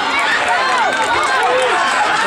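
Several spectators shouting and yelling encouragement at once, their voices overlapping in loud, rising-and-falling calls as relay runners pass.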